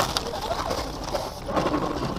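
Car crash on a snowy road heard from inside a car: a sudden loud noise, then a second loud burst about a second and a half in, with a person's high gliding cries in between.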